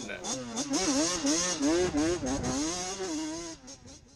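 Racing kart engine sound revving up and down about three times a second in an unbroken wavering note, fading out near the end.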